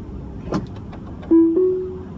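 Low car-cabin road rumble with a single click about half a second in. Near the end come two short notes that start sharply and fade, the second a little higher than the first, like a brief musical sting.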